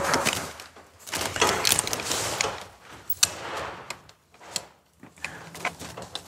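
Rope access gear being handled: rope and harness rustling, then a few sharp clicks of metal hardware as a rope backup device is taken off and readied.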